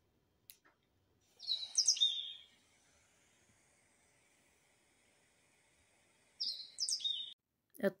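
A bird chirping: two short bursts of high, quick chirps, about a second and a half in and again near the end, with little else between them.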